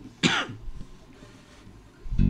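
One short spritz from a pump-spray bottle of e.l.f. face mist, sprayed at the face: a quick hiss about a quarter second in.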